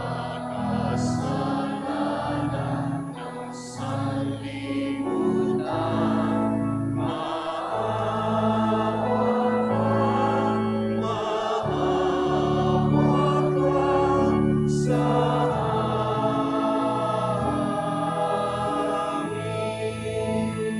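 Church choir singing a slow hymn with organ accompaniment, in long held notes and chords.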